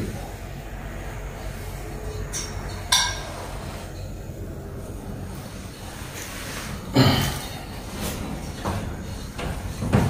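Wire meat hooks clinking and knocking as pieces of pig offal are hung up from the rafters, over a low steady hum. There is a sharp click about three seconds in and a louder knock about seven seconds in.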